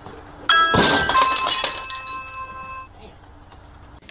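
A sudden crash about half a second in. Clear ringing, chiming tones fade out over about two seconds after it.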